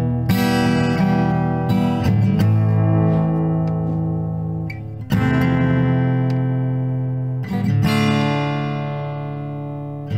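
Acoustic guitar played slowly, chord by chord: four strummed chords, each left to ring and fade before the next. The guitar is miked close on a Saramonic SR-MV2000 USB microphone.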